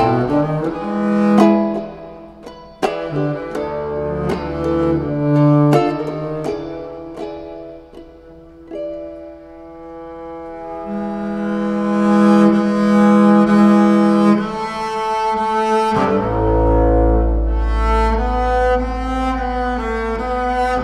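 Instrumental passage of a double bass played with a bow and an acoustic guitar. The first half has picked guitar notes; then the bass takes over in long held notes, dropping to a deep low note near the end.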